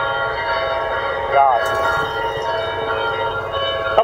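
Church bells ringing, many overlapping tones held throughout.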